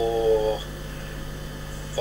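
A man's voice holding a level hesitation sound, a drawn-out 'mmm', for about the first half second while he counts in his head. After that only a steady low background hum is left.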